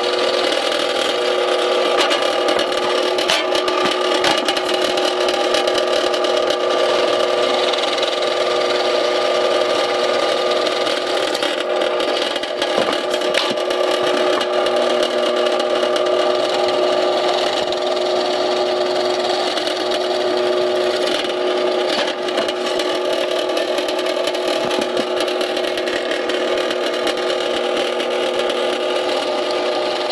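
A drill press running steadily with a constant motor hum while its twist bit bores hole after hole through three-quarter-inch plywood, adding a rough scraping of wood being cut. The press is powered through an inverter from an ultracapacitor pack.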